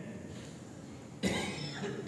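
One short cough a little past a second in.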